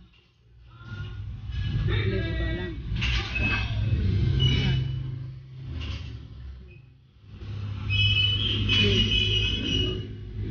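Indistinct voices over a steady low hum in a gym.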